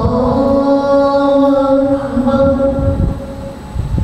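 A man's voice chanting through a microphone in long, drawn-out melodic notes. A brief dip near the end is followed by the next phrase.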